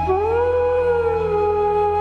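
Slow, sad background music: a sliding lead note rises just after the start and then slowly sinks over held chords and a low steady drone.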